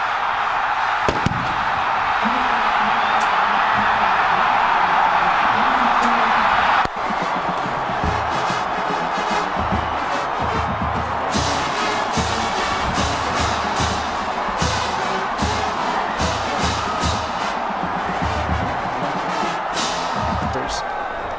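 Stadium crowd roaring and cheering, which cuts off suddenly about seven seconds in. Music with a steady thumping beat follows, with sharp cymbal-like ticks joining a few seconds later.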